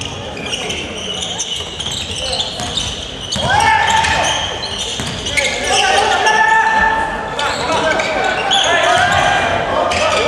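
Basketball game sounds on a gym's hardwood court: sneakers squeaking and the ball bouncing, with voices shouting from about three and a half seconds in, louder from there on.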